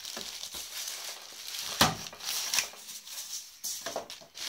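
Clear plastic bag crinkling and rustling as a heavy inverter wrapped in it is handled and lifted out of polystyrene foam packing, with a sharp knock a little under two seconds in.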